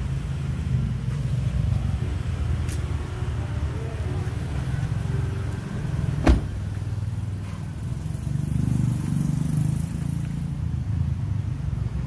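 Steady low rumble of a Honda Brio's 1.2-litre i-VTEC engine idling. About six seconds in there is a sharp click as the rear door is unlatched and opened.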